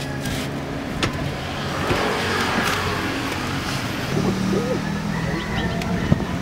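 A car engine running with a steady low hum, with a broad swell of traffic noise rising and fading about two to three seconds in.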